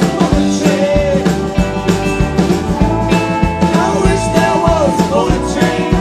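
Live Americana rock band playing: a steady drum-kit beat under bass and guitars, with notes sliding up and down in pitch over the top.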